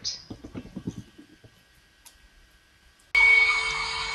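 Faint taps and knocks of a clear acrylic stamp block pressed down onto cardstock, then near quiet. A little after three seconds a loud, steady whirring hum with a high whine cuts in suddenly: an embossing heat tool running.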